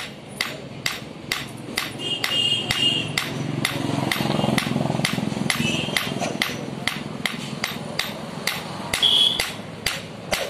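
Hand hammer striking a red-hot steel knife blade on an anvil block, steady even blows at about two a second, as the curved vegetable knife is forged to shape.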